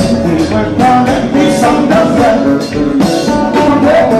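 Live Haitian konpa band playing loudly through a PA system, with a lead vocal over the drums and percussion.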